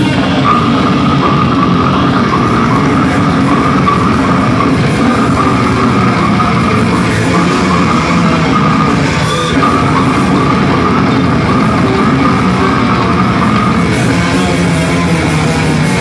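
Heavy metal band playing live: distorted electric guitars and a drum kit at full volume, dense and unbroken.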